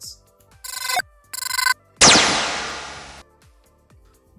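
Two short ringing electronic tones, then a sudden loud crash-like hit that rings and fades away over about a second. This is a sound effect added in editing.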